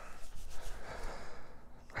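A person breathing, a soft breath close to a clip-on microphone, fading near the end.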